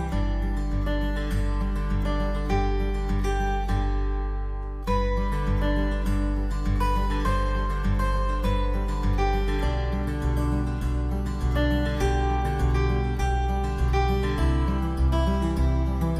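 Instrumental background music of plucked-string notes over a steady pulse, thinning briefly about four seconds in before picking up again.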